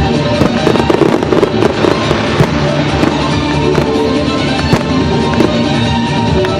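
Aerial firework shells bursting in a quick, irregular run of sharp bangs, over music that plays all the way through.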